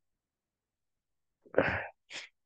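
Silence, then near the end a man's single short, sharp burst of voice and breath.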